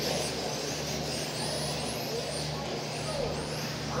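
A pack of 1/10-scale electric touring cars with modified brushless motors racing on carpet. Their high-pitched motor whines rise and fall over and over as they accelerate and pass, over a steady low hum.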